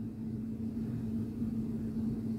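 A steady low hum with one constant tone running underneath, from an unseen source.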